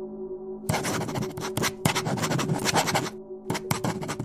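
A pen scratching on paper in quick, irregular strokes as words are written out, starting under a second in with a short break near the end. Soft background music with a steady held tone plays underneath.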